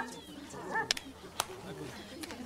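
Low background murmur of voices with a short pitched call a little before the middle. Two sharp clicks come about a second in and again shortly after.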